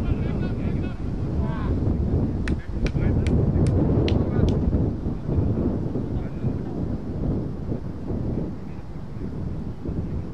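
Wind buffeting the microphone: a loud, uneven rumble, with faint voices in the distance. From a few seconds in there is a short run of about six sharp clicks, two to three a second.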